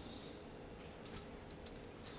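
Faint light clicks of a small metal tabletop tripod being handled, its legs and ball head clicking as they are moved; about four small clicks in the second half.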